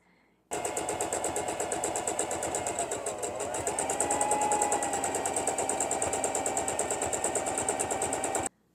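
Electric sewing machine stitching a seam through linen in a fast, even rhythm of needle strokes. It starts about half a second in, and its hum dips briefly near the middle before steadying.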